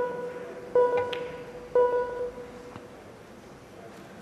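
Snooker Shoot Out shot-clock warning beeps counting down the last seconds of the 10-second shot clock: three identical electronic beeps, one a second, each fading quickly. A faint click comes just after the second beep.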